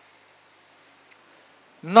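Quiet room hiss with a single faint click from a computer keyboard about a second in; a man starts speaking near the end.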